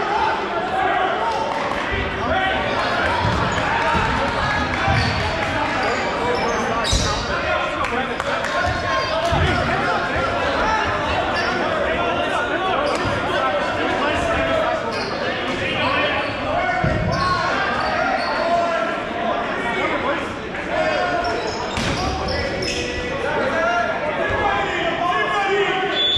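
Dodgeballs thumping on a hardwood gym floor now and then, under steady chatter and calls from many players, echoing in a large gymnasium.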